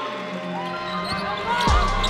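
Cheering after a swished three-pointer, with held shouts ringing out. About three-quarters of the way in, music with a deep bass comes in.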